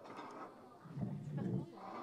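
Indistinct background chatter of several people talking in a room, with a louder voice about a second in.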